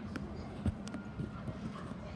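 Irregular soft knocks of footsteps and a phone being handled while it is carried, the loudest about two thirds of a second in, over the steady low hum of a terminal hall.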